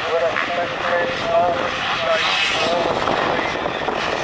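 A full gate of motocross bikes running and revving together while waiting at the start line, a steady mixed engine drone with short blips of throttle.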